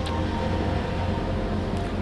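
Steady low background hum with a few faint even tones, and a short click right at the start.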